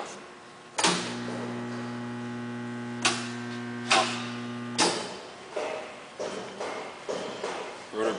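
Electric motor stator energized from the mains: a switch click, then about four seconds of steady low electrical hum with several higher tones above it, cut off by another click. Two sharp clicks sound partway through the hum.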